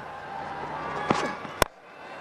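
Steady stadium crowd noise with a sharp crack of a cricket bat striking the ball about a second in. Just after it comes an abrupt click and a sudden drop in level, an edit cut.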